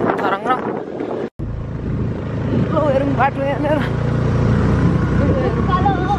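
Motorcycle engine running with a steady low rumble while riding, with voices over it. The sound drops out for a moment about a second in.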